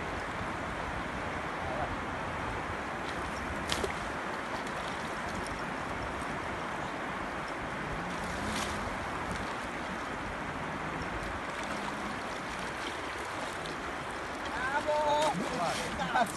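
Steady rush of river water spilling over a low weir.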